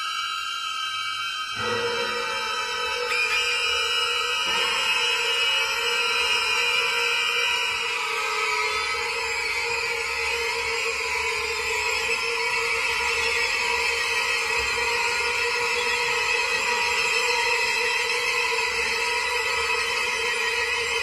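Background music of sustained, droning tones that hold steady, with a change in the chord about a second and a half in.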